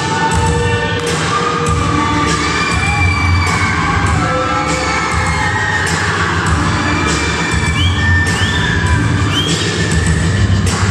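Loud dance music with a steady beat playing in a hall, with an audience cheering and shouting over it.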